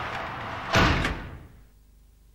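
A swelling whoosh that ends in one loud slam-like hit about three-quarters of a second in, dying away within a second: a programme transition sound effect.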